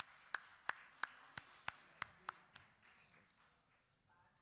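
Thin, faint applause in a hall: a few distinct hand claps, about three a second, dying away a little under three seconds in.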